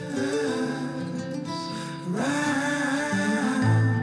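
Background music: a song with a singing voice over guitar.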